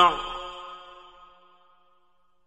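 A male Quran reciter in the mujawwad style ends a long held note with a short downward fall in pitch. An echo then dies away to near silence within about a second and a half.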